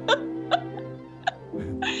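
A soft background music bed of steady held notes, with a few short laughing gasps over it; a voice starts near the end.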